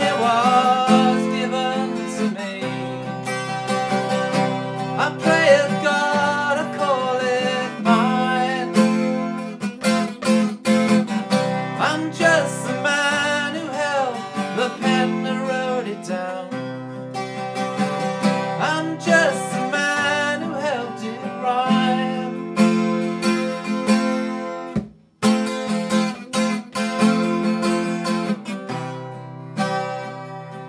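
Acoustic guitar music: strummed chords under a moving melodic line, with a brief break about 25 seconds in.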